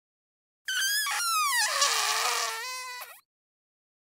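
A high-pitched fart sound effect that slides down in pitch, lasting about two and a half seconds and starting a little under a second in.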